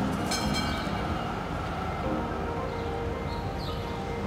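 Low, steady rumble of passing rail traffic in the street, with a brief high squeal about half a second in.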